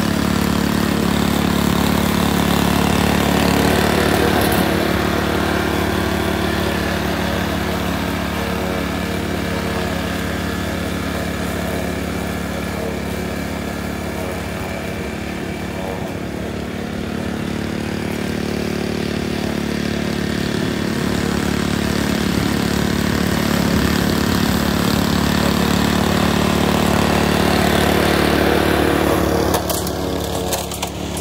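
Honda UM2460 walk-behind rotary mower running steadily under load as it cuts grass. The engine grows somewhat fainter in the middle as the mower moves away and louder again as it comes back.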